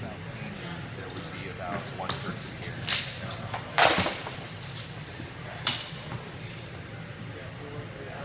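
Training flail and sword striking shields and each other in sparring: about four sharp cracks, the loudest about four seconds in as the fighters close.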